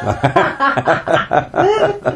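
Laughter: a run of quick chuckles from people in the conversation, following a joke.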